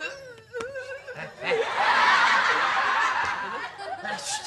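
People laughing: short snickers and giggles at first, then from about a second and a half in, louder and fuller laughter from several people.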